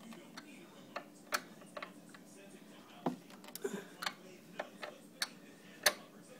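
Screwdriver working a screw in a table's corner bracket: irregular sharp clicks and ticks as the tool turns and knocks in the screw head, the loudest near the end.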